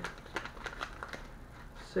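Thin plastic soft-bait bag crinkling in the hands as the worms inside are handled: a string of small, irregular crackles.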